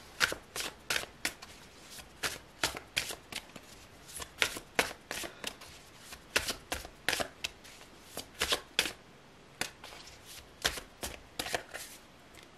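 A large tarot deck being shuffled by hand, packets of cards dropped from one hand onto the other: a run of sharp card snaps, a few a second, broken by short pauses.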